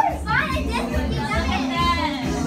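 Several voices talking and calling out over one another, with music playing underneath.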